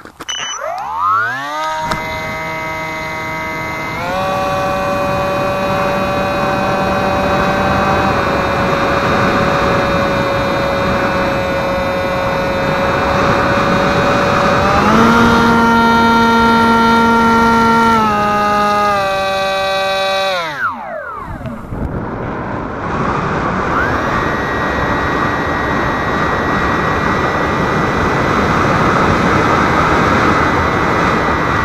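Electric brushless outrunner motor driving a 7x4 pusher propeller on a small RC foam-board jet, heard from an onboard camera with wind rush on the microphone. The motor whine rises as it spools up, steps up and down in pitch with the throttle, cuts out about two-thirds of the way through, leaving only wind noise for a couple of seconds, then comes back on.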